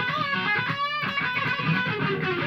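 Les Paul-style solid-body electric guitar played lead: a run of quick single notes, with one note held and wavered in vibrato about a second in.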